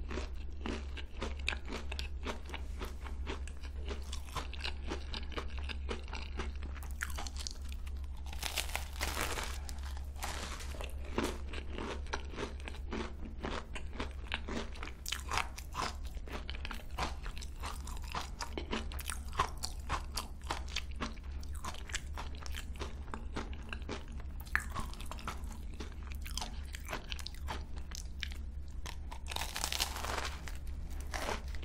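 Close-miked chewing of a crisp croquant choux pastry, a cream puff with a crunchy cookie crust: a dense, continuous run of crisp crunches, with a fresh bite into the pastry near the end. A steady low hum runs underneath.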